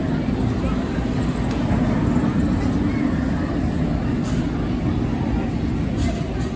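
Steel looping roller coaster train running on its track, a steady low rumble, with voices of people around.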